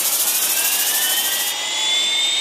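Small camera drone's propellers whirring as it lifts off, the motor whine rising slowly in pitch.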